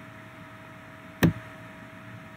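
A single sharp mouse click about a second in, stopping a video recording, over a faint steady hum.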